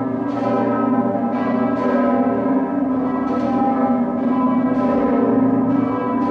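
Bells ringing: many overlapping, sustained tones, with new strikes arriving irregularly about once a second.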